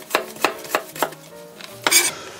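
A kitchen knife slicing a cucumber into thin rounds on a wooden cutting board. About four evenly spaced chops come in the first second, then a pause, then one louder chop near the end.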